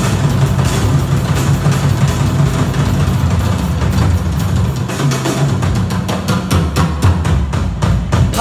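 A live rock band playing in a concert hall, with a heavy, busy drum kit (bass drum and cymbals) over electric guitar and bass, heard from the audience.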